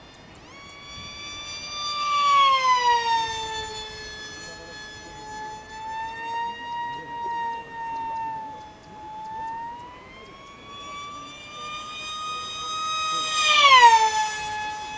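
Multiplex FunJet RC pusher jet's 2600KV brushless motor and 6.5×5.5 propeller whining in flight, the pitch gliding down and up as it circles. It swells about two seconds in with a falling pitch, then is loudest near the end as it flies past, the pitch dropping sharply.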